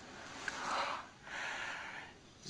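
A man breathing out twice in soft, breathy swells through a wide open-mouthed grin, each lasting under a second, with no voice in them.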